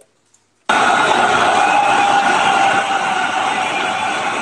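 A loud burst of crowd noise, like cheering, that starts suddenly under a second in and cuts off abruptly after about four seconds, typical of a sound clip played into the stream.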